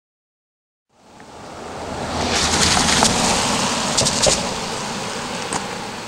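A car passing on a wet road, its tyres hissing: the sound builds about a second in, peaks near the middle, then fades as the car moves away.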